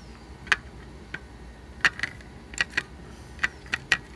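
Handling noise: about eight light, sharp clicks and taps at irregular intervals as a paper carrier strip of surface-mount resistors is turned over against a circuit board.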